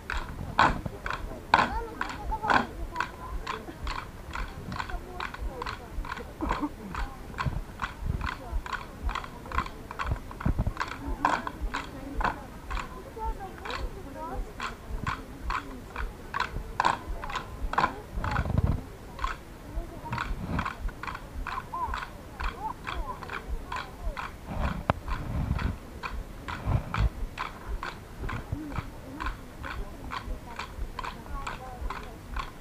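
Wooden sticks clacking together in a steady dance rhythm, about two to three strikes a second, with a few deeper thuds partway through.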